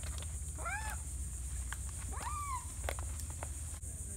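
Two short animal calls about a second and a half apart, each rising then falling in pitch, over a steady high hiss.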